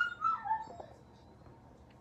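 A dog whimpering: a few short high whines that fall in pitch during the first second.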